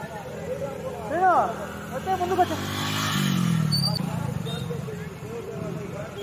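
Men's voices shouting and calling out over stopped road traffic. A motor vehicle engine swells and passes about halfway through, its pitch dropping.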